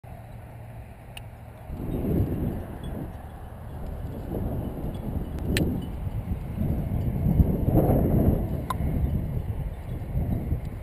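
Wind buffeting the microphone in gusts, a low rumble that swells and fades, with three sharp clicks.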